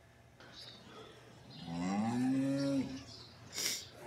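A cow mooing once, a single long call of about a second near the middle, rising slightly at the start and dropping off at the end.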